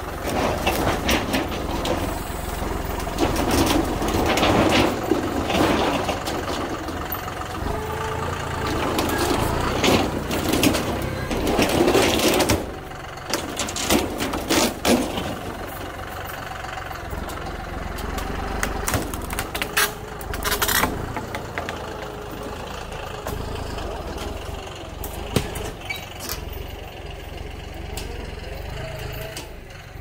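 John Deere utility tractor's diesel engine running under load while its front-loader grapple rips down a wooden shelter with a sheet-metal roof: repeated cracks of splintering wood and bangs and scrapes of metal roofing over the steady engine, thickest in the first half and again about two-thirds in.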